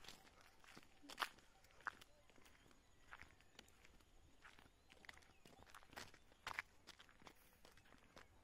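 Faint, irregular footsteps crunching on dry ground, with near silence between the steps.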